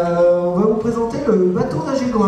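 A man's voice singing or chanting a short phrase of drawn-out notes into a microphone over the hall's sound system. It opens on a held note about half a second long, then glides up and down.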